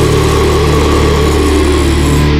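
Hardcore punk recording: a loud distorted guitar chord held and left ringing steadily, with no drum hits.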